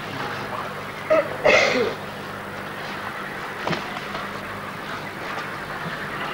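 Old camcorder soundtrack of outdoor sparring: a steady low hum under the background noise, two short sounds, the second one voice-like, about a second and a second and a half in, and a faint knock near the middle.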